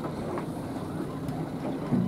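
Steady low hum of a fishing boat at sea, with a faint steady engine tone under wind and water noise.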